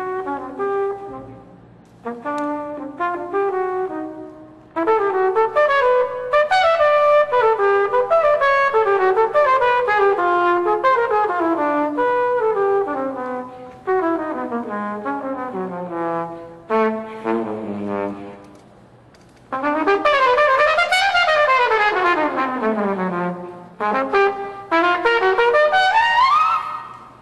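Jazz trumpet playing an unaccompanied solo passage of fast runs of notes, mostly descending, broken by short pauses, with a long downward run about two-thirds of the way through.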